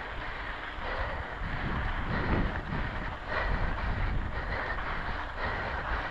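Mountain bike rolling fast over a dry, rocky dirt trail, heard from a handlebar-mounted camera: tyres crunching over gravel and the frame and bars rattling and chattering over the bumps, with a low rumble of wind and vibration.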